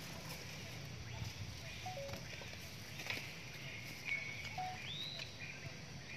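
Outdoor background with a low steady murmur. A few short high chirps and whistles sound over it, one rising and falling near the end, and a light click comes about halfway through.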